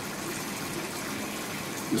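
Steady rushing background noise, like running water, with no clear events in it.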